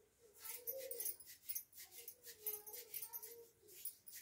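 Light clinking of glass bangles as hands move, many quick small clicks, with a faint wavering whine under it.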